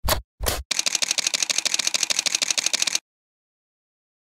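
Camera shutter: two single shutter clicks, then a rapid continuous-shooting burst of about a dozen clicks a second for over two seconds, cutting off suddenly.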